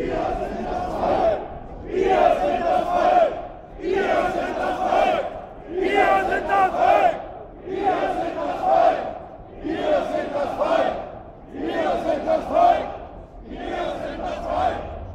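Crowd of marching demonstrators chanting a short slogan in unison, repeated about every two seconds.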